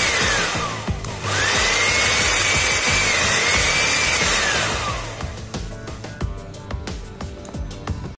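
Turbo EAM8098 blender's newly fitted replacement motor running unloaded at speed with a high whine. It winds down about a second in, starts up again, then winds down and stops about five seconds in. A running motor here is the sign that the blender that was dead is working again.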